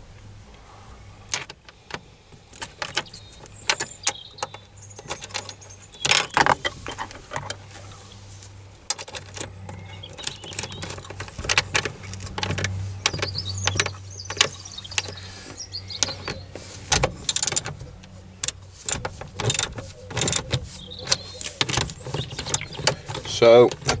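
Scattered metallic clicks and clinks of bolts and hand tools against the metal gear-shifter base as the short shifter's mounting bolts are fitted and tightened. The clicks come thicker in the second half, over a steady low hum.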